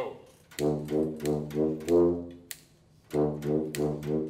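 Small student brass ensemble of euphonium, tuba, trombone and French horn playing together: a run of about five short notes ending on a held note, a pause of nearly a second, then the same pattern of short notes starting again.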